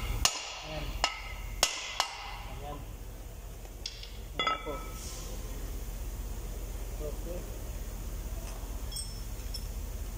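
Sharp metallic knocks and clinks from a cast-iron rear brake rotor disc being tapped and worked off its hub, each with a short ring: four in the first two seconds and two more around four seconds in, then only a few faint ticks.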